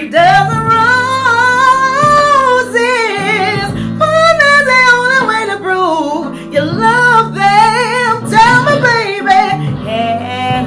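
A woman's voice singing long, ornamented held notes with strong vibrato over a backing track with sustained low accompaniment notes.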